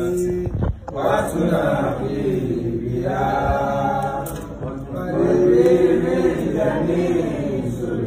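Voices chanting an Arabic salawat, the blessing on the Prophet Muhammad, together in slow melodic phrases with long held notes.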